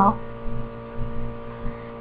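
Steady electrical mains hum with a stack of buzzy overtones on a home voice recording. The end of a spoken word fades out just after the start, and a few faint short sounds follow.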